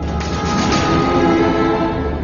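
A loud rushing, rumbling noise comes in suddenly at the start over ongoing background music and is loudest in the first second and a half, like a passing train or a whoosh sound effect.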